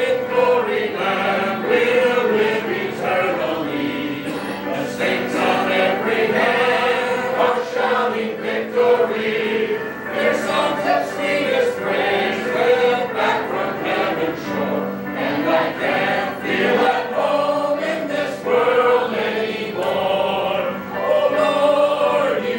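A group of voices singing a sacred song together in a church.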